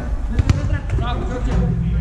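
A football kicked on artificial turf: a sharp thud about half a second in, with a lighter touch shortly after, amid players' shouts.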